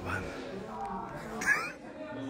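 A person's playful vocalising, with a short, high-pitched, cat-like squeal about one and a half seconds in.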